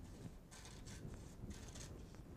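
A few faint, soft rustles of fabric and fusible-web-backed applique fabric being handled in the hands.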